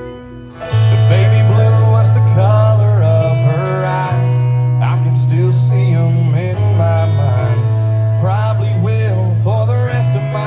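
A live country band plays at full volume, with guitar and singing over it. A heavy bass line comes in loud about a second in.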